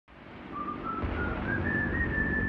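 Military helicopters in flight: a high turbine whine that climbs in pitch in small steps and then holds steady, over a low rumble, fading in from silence.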